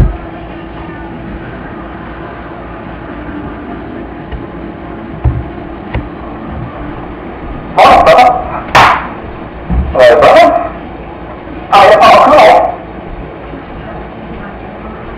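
A dog barking in four short, loud bursts over a steady low hum, the barks starting about eight seconds in, the last a quick double bark.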